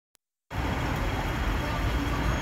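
Steady outdoor background rumble, heaviest at the low end, cutting in suddenly about half a second in after a moment of silence.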